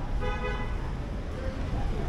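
A short car horn toot, under half a second long, over a steady low rumble of traffic.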